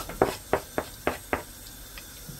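Diced onion frying in oil in a pot: a run of short clicks and pops in the first second and a half, then a faint, even sizzle.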